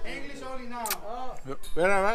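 Voices talking and exclaiming close by, with one short sharp click about a second in.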